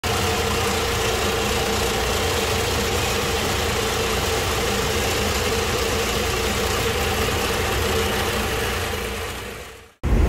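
Vertical mill running steadily while grinding alkaline batteries, its shredded output and black-mass dust pouring into a collection drum; the machine noise fades out near the end.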